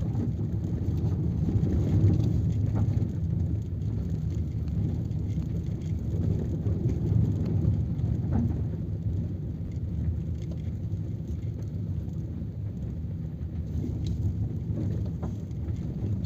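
A car driving slowly on an unpaved forest road, heard from inside the cabin: a steady low engine and road rumble with a few faint clicks.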